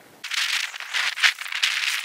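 A dry, high-pitched rattling rustle in quick, irregular pulses for nearly two seconds, with no low end to it.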